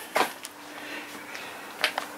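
Two brief knocks of handling, one just after the start and one near the end, over a faint steady hum.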